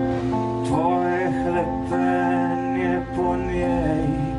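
A man singing a slow song in his own language to his own strummed acoustic guitar, played live through a small PA. His held notes waver with vibrato over the chords.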